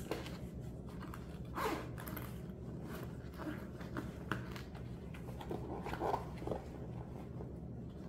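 A zipper on a fabric garment bag being worked in several short pulls, with rustling of the bag's fabric as it is handled; the strongest pulls come a little under two seconds in and again around six seconds.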